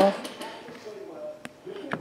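Rigid plastic trading-card holders clicking as a stack of cards is handled, two sharp clicks in the second half.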